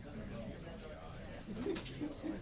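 Indistinct murmur of people talking quietly in a room, with a short louder low-pitched voice sound near the end.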